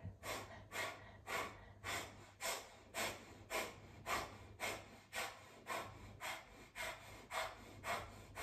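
A woman doing breath of fire: short, forceful exhales through the nose, repeated evenly about twice a second.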